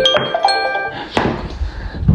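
An alarm tone playing a melody of chiming notes that step upward in pitch, cutting off just before a second in, followed by a single knock.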